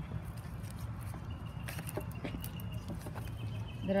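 Faint scattered clicks and rustles of plastic grafting tape being handled and unwound from a grafted stem, over a steady low background hum.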